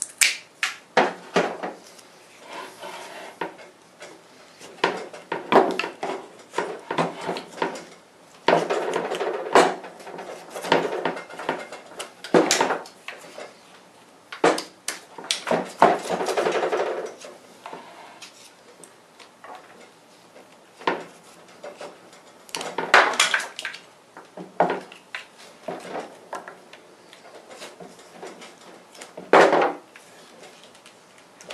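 Workbench handling noises while syntactic dough is worked into an epoxy mold shell: irregular clicks and knocks of tools and a wooden stick picked up and set down, with several longer stretches of scraping and rubbing.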